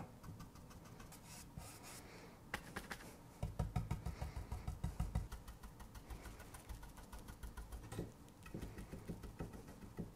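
Small paintbrush dabbing and brushing chalk paint onto a wooden paddle handle: faint, quick taps, with a denser run of about five a second a few seconds in.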